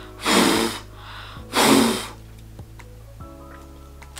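Two hard blows of breath through a thin, doubled cloth handkerchief worn as a face mask, aimed at a lighter flame, each about half a second long and a second apart: the lighter test, checking whether breath passes through the cloth.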